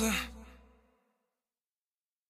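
The end of a pop song: a last sung note wavers, slides down in pitch and fades out within about a second, followed by silence.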